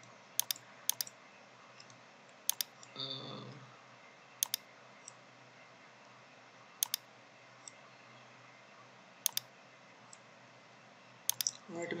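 Computer mouse button clicks, about seven of them a second or two apart, most heard as a quick press-and-release pair, over a faint steady hiss. A brief soft noise comes about three seconds in.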